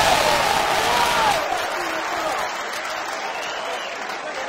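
Football spectators clapping with men's voices shouting; the clapping is loudest at the start and dies away after about a second and a half.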